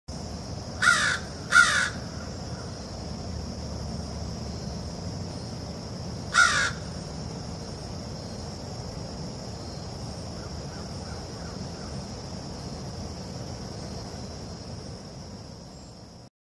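Black crows cawing: two harsh caws in quick succession about a second in, and a single caw a few seconds later. A steady high-pitched hum runs underneath.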